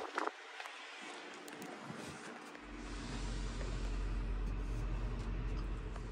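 Low, steady rumble of wind buffeting the microphone as the camera moves, setting in about halfway through, after a faint click near the start.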